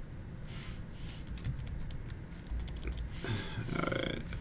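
Typing on a computer keyboard: a quick, uneven run of key clicks, with a short pitched sound, like a hum, near the end.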